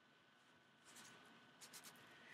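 Near silence: room tone, with a few faint soft sounds in the second half.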